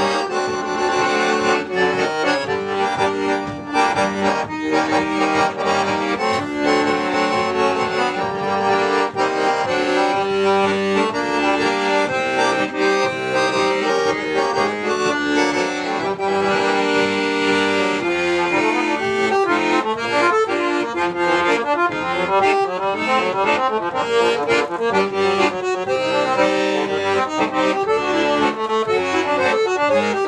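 Piano accordion playing a solo in a bluesy tune, with no saxophone playing. The notes come in busy runs that grow quicker about two-thirds of the way through.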